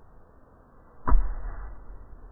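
A single sudden low thump about a second in, heavy in the bass and fading over about half a second.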